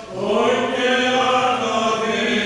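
Greek Orthodox Byzantine chant: voices singing long held notes in a slow melody, with a brief breath pause right at the start.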